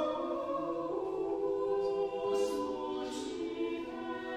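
A choir singing slow, held chords, several voices sustaining notes together with soft sibilant consonants now and then.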